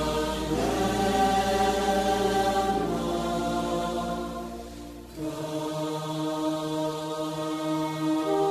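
Praise-and-worship music with sustained choral chords over a low held bass note. About five seconds in the sound dips and the bass drops away, then a new held chord comes in.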